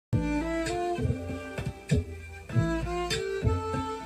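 Violin melody played over a tango backing groove, with a bass line and sharp rhythmic accents.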